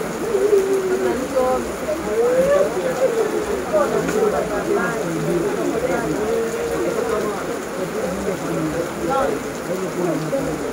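Heavy rain falling steadily, with indistinct voices talking underneath it.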